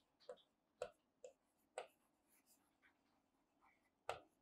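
Faint pen taps and strokes of handwriting on a board: four soft ticks about half a second apart in the first two seconds, then only fainter traces.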